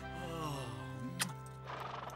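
A horse whinnying over gentle background music, its pitch falling over about a second, followed by a sharp click and a rough, breathy sound near the end.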